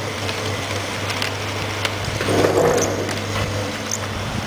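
Bench rotary enamelled-wire stripping machine running, its electric motor giving a steady hum. There are a few short ticks and a louder stretch about halfway through as the enamelled leads of toroidal choke coils are pushed into the spinning stripping head.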